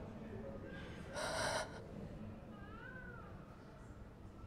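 A woman's grief-stricken cry: a sharp, gasping sob a little over a second in, then a short whimper that rises and falls in pitch near three seconds.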